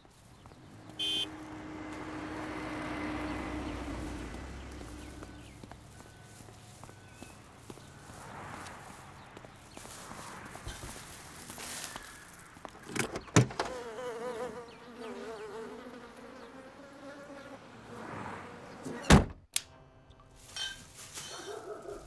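Car-park traffic noise swells and fades in the first few seconds. About halfway through, a car boot is unlocked and opened with a thunk, and a buzz of flies rises from a decomposing body inside. Near the end the boot is slammed shut, the loudest sound.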